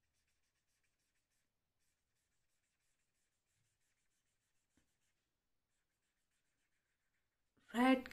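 Very faint scratching of a felt-tip marker colouring on paper, barely above silence. A woman's voice says "red" right at the end.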